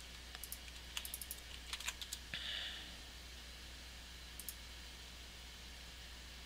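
Faint computer keyboard and mouse clicks: a handful of sharp clicks in the first two seconds, a short soft hiss about two and a half seconds in, and two more clicks a little past the middle.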